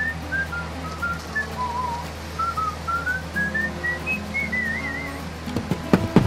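A cheerful tune whistled over light background music. The melody steps down to its lowest notes about two seconds in, with a short warble there, then climbs again and ends on a longer warble about five seconds in.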